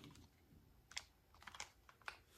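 Faint, irregular clicks of remote-control buttons being pressed to move through a DVD menu: one at the start, one about a second in, then a quick cluster near the end.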